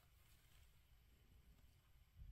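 Near silence: faint room tone inside a parked car, with a low steady rumble.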